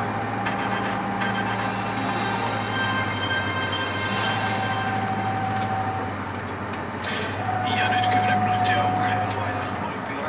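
City bus driving along, heard from inside the cabin: a steady low engine hum with a faint whining tone above it. The bus gets louder and noisier for a couple of seconds near the end.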